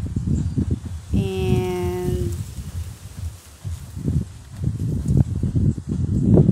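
Wind buffeting a phone microphone outdoors, an uneven low rumble throughout. About a second in, a steady held tone lasts for about a second.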